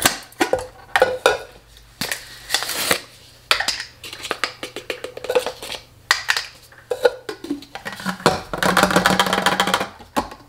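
Plastic storage containers, lids and tubs handled on a granite countertop: a string of sharp clicks and knocks as a pop-top lid is opened and things are set down. Near the end, a longer rustling rush as protein powder is tipped from a tub into a clear container.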